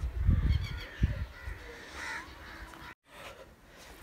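A few distant bird calls over a low rumble in the first second; the sound drops out briefly about three seconds in.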